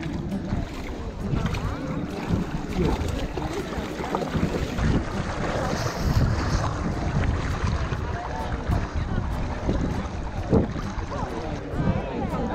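Wind buffeting the action camera's microphone over water sloshing as people wade into a warm outdoor pool, with faint voices of other bathers.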